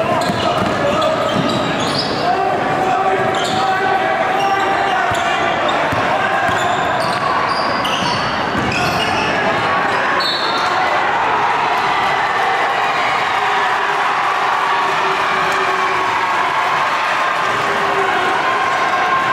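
Basketball game in a gym: a ball bouncing on a hardwood floor and shoes squeaking, mostly in the first half, over steady chatter from the crowd.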